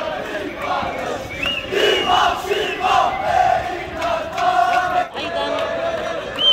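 A large crowd of young men chanting and shouting together, many voices at once with some drawn-out calls, briefly breaking off about five seconds in.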